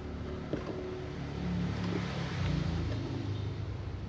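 A low motor-vehicle engine hum, swelling through the middle and easing off, with a light click about half a second in.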